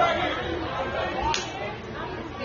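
Indistinct background chatter of several people's voices talking and calling out, with one short sharp sound about a second and a half in.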